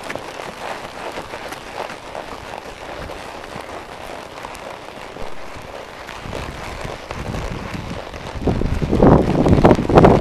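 Horse's hooves on dry, gravelly desert ground with wind on the microphone. A much louder low rumble builds about eight and a half seconds in.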